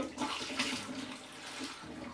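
Apple juice poured from a carton through a plastic funnel into a glass demijohn: a steady stream of liquid running in.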